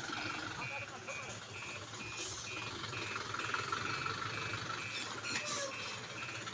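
An orange tipper truck's reversing alarm beeping steadily, about two short beeps a second, as the truck backs up, with its engine running underneath.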